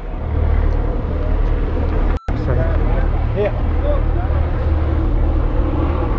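Car engines idling close by, a steady low rumble. The sound cuts out completely for an instant a little past two seconds in.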